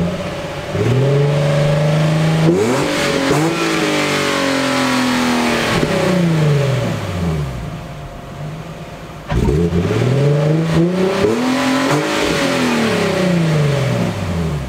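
Nissan Skyline V36 sedan's V6 engine revved twice while parked. Each time the note climbs quickly and then falls back to idle over a few seconds, the first at about a second in and the second at about nine seconds in.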